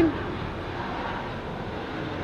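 An aeroplane flying overhead: a steady, even roar with no distinct tones.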